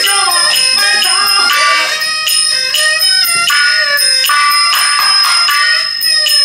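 Shaanxi shadow-play band music: a small struck brass percussion piece rings high and steady, struck about twice a second, under a wavering melody on traditional instruments.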